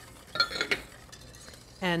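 Two short, ringing clinks of a wire whisk and stainless-steel saucepan being handled, about half a second in. A man's voice begins near the end.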